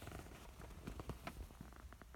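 Faint handling noise from a hand-held phone being swung around: a low rumble with a scatter of soft clicks and rubs.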